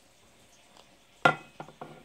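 Small plastic toy teacup set down with a sharp knock about a second in, followed by a few lighter clicks as the toys are handled.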